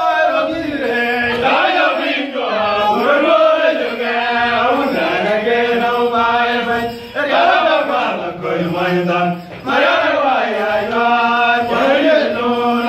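A group of men chanting a traditional Dinka song together, in long held phrases with gliding pitch and short breaks between phrases.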